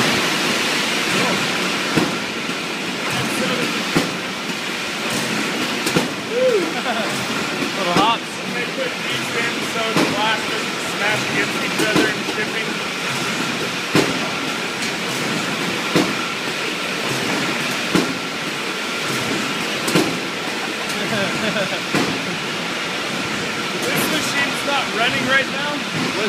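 Brewery bottling-line machinery running: a continuous din of conveyors and packing machines with a steady high whine, and a sharp click repeating about every two seconds. Muffled voices sound underneath.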